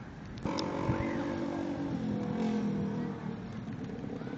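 A motor vehicle's engine running and accelerating. It comes in suddenly about half a second in and drops in pitch about halfway through.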